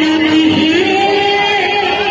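Live Odia kirtan music: a woman singing into a microphone holds one long note that steps up in pitch about half a second in, over the accompaniment.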